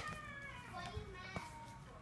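Faint, high-pitched child's voice in the background, with a couple of light handling clicks.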